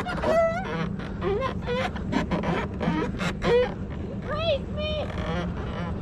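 A person laughing in short bursts over the steady low rumble of a luge cart's wheels rolling on the concrete track.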